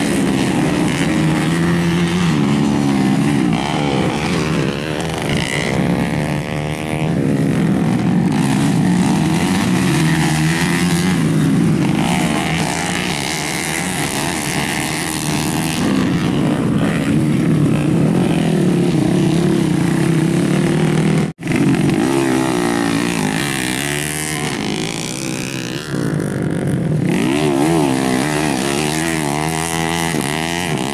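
Off-road motocross bikes racing on a dirt track, several engines revving up and down as riders accelerate and shift past. The sound cuts out for an instant about two-thirds of the way through.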